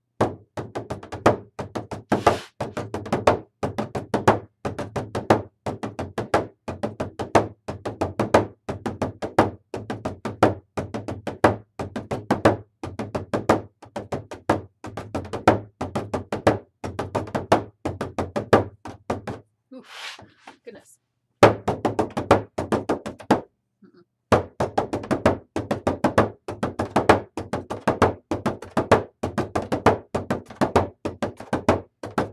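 Bodhrán with a synthetic head struck with a wooden beater in a steady run of rapid strokes, damped by the player's hand held behind the head. The playing breaks off twice for a second or two, about two-thirds of the way through.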